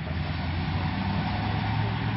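A motor vehicle engine running steadily: a low, even hum over a haze of street noise.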